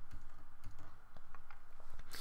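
Several light, scattered clicks of computer keys, irregularly spaced over the two seconds.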